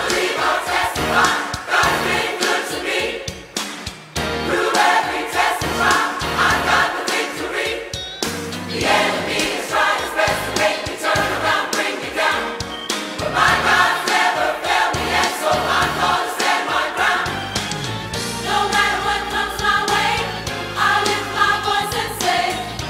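A gospel choir singing with instrumental backing and a steady bass line, in sung phrases that break off briefly every few seconds.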